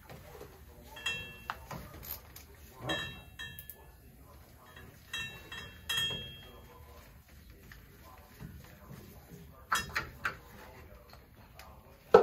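Metal hand tools and small metal parts clinking against metal: a few sharp clicks that ring briefly, about a second, three seconds, five and six seconds in, then a couple of softer knocks near ten seconds.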